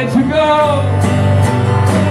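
Live acoustic guitars strumming a country-folk song, with a male voice carrying a bending melody line in the first half.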